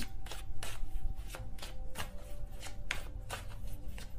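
Tarot cards being shuffled by hand: a quick, irregular run of soft card clicks and flutters.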